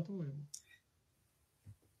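A man's voice trailing off at the end of a spoken question, then a single faint click and a pause with almost no sound.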